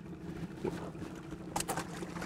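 Water splashing beside an aluminium boat as a released brook trout kicks away, with a few sharp splashes near the end over a steady low hum.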